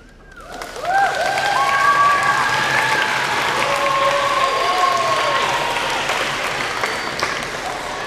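Audience of schoolchildren clapping and cheering at the end of a band piece, with high voices whooping over the applause. The applause swells up about half a second in and slowly dies down toward the end.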